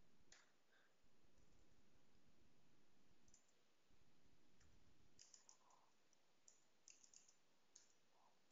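Faint computer keyboard clicks: typing in short quick runs, mostly in the second half, over near silence.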